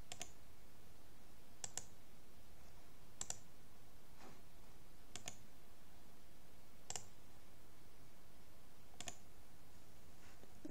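Computer mouse clicks, sharp and brief, some in quick pairs, coming every second or two at irregular intervals over a faint steady room hiss.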